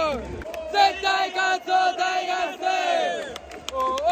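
Baseball stadium crowd chanting a cheer song in unison, with a man shouting along loudly close to the microphone. The voices rise and fall in sung phrases with long held notes.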